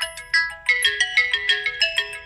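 Smartphone ringtone playing a quick melody of short pitched notes, signalling an incoming call.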